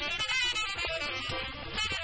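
Jazz quartet of tenor saxophone, piano, upright bass and drums playing a calypso-flavoured tune, with frequent cymbal and drum strokes throughout.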